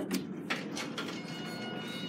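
Elevator lobby background noise with a few soft knocks in the first second. From a little past halfway, faint high steady tones of an elevator hall chime sound, the signal that a car is arriving.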